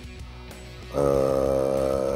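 Soft background music under a pause in a man's speech. About a second in comes one long, level, drawn-out hesitation sound ("uhhh") from the man.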